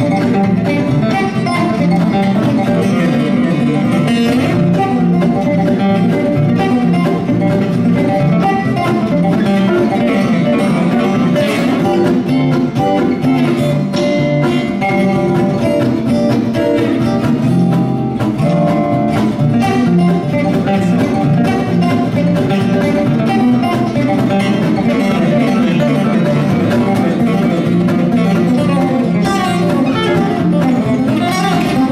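Two guitars playing a duet: a steel-string acoustic guitar and an archtop guitar, picking a steady, fast stream of notes in a country-style instrumental.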